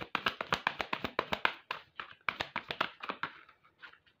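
A deck of tarot cards being shuffled by hand, the cards slapping together in quick clicks several times a second, with a short pause a little before halfway.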